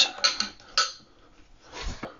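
Plastic hinge covers of a toilet seat being snapped into place: a few short plastic clicks in the first second, and another softer one near the end.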